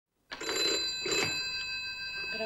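Desk telephone bell ringing, coming in about a third of a second in after a moment of silence.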